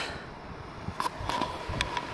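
Wind rumbling on the camera microphone outdoors, with a couple of faint clicks.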